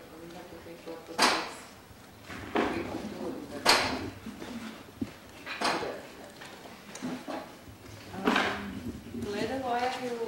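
Five sharp scraping or clattering sounds, one to three seconds apart, the loudest about a second in and about four seconds in.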